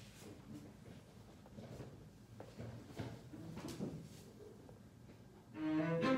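A few faint knocks and shuffles, then near the end a cello starts playing, a run of bowed notes.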